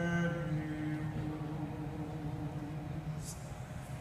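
Solo male voice singing a plainchant hymn, holding one long low note that slowly fades, with a short 's' sound near the end.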